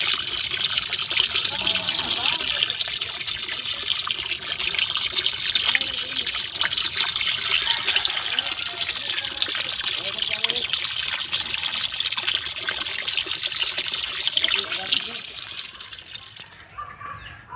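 Water from a pond filter's return pipe pouring into the pond, a steady splashing rush of falling water.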